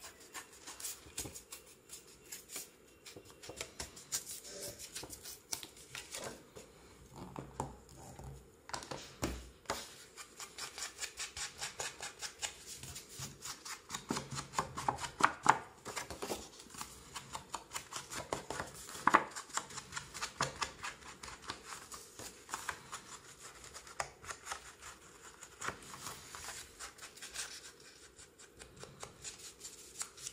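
Paper being torn by hand along its edge in a series of short rips, with sheets handled, folded and rubbed flat on the table between them.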